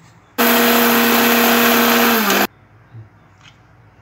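Electric mixer grinder running in one short burst of about two seconds, dry-grinding roasted spices and curry leaves in its steel jar. Its hum dips slightly in pitch just before it cuts off.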